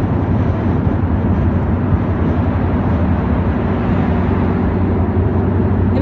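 A car driving at speed, heard from inside the cabin: steady low road and engine noise.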